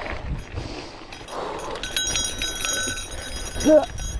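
A gravel bike on a rough dirt fire road, with gravel crunch, knocks and wind rumble on the microphone. A steady high-pitched tone sounds for about two seconds in the middle, and the rider gives a short voiced exclamation near the end.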